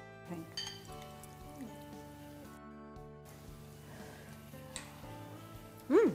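Soft background music of sustained held notes, with a few faint clinks of cutlery against bowls.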